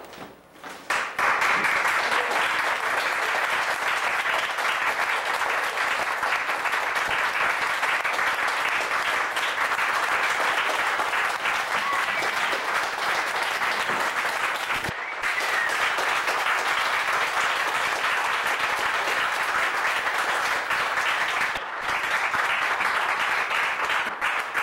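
Audience applauding a curtain call, dense steady clapping that starts about a second in and carries on throughout, with two brief dips.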